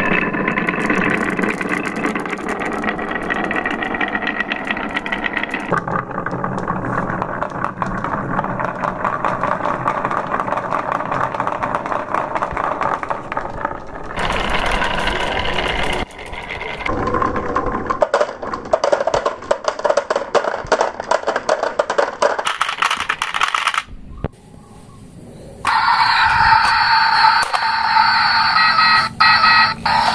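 Glass marbles rolling and clattering down grooved wooden tracks: rapid clicking and rumbling in several stretches that change abruptly, with a brief quieter gap near the end.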